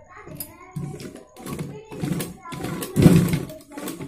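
A person talking, with no words made out; no sewing machine stitching is clearly heard.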